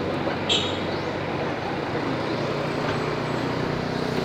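Steady roadside street noise from passing traffic, with a brief high squeak about half a second in.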